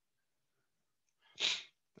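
Near silence, then one short, sharp burst of breath from the narrator about a second and a half in, just before he speaks again.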